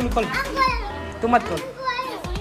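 Family voices talking over one another, children among them, with background music running underneath.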